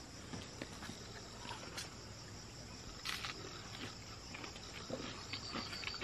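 Faint outdoor ambience of insects chirring steadily, likely crickets, with scattered soft clicks.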